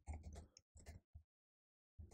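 Faint computer keyboard keystrokes: a handful of soft clicks over the first second or so, then near silence.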